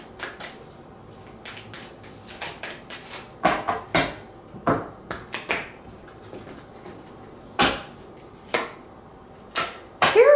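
Tarot cards being handled and a card drawn and laid down: a string of about seven irregular soft slaps and taps, the sharpest about four seconds in and again near the end.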